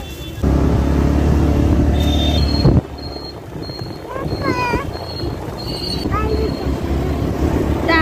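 Wind buffeting a phone's microphone on a moving scooter, a loud low rumble that cuts off abruptly near the three-second mark. After that a lower road rumble continues under a short high beep that repeats about twice a second for several seconds.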